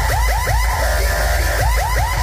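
Electronic dance music played at high volume through a large outdoor DJ sound system. It has heavy bass and a fast, siren-like synth sweep that rises and falls about six times a second, breaking off briefly about a second in.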